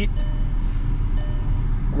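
A car engine idling, heard from inside the cabin as a steady low rumble, with faint high thin tones coming and going.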